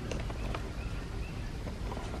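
Low, steady handling rumble from a hand-held phone microphone, with a few faint soft clicks.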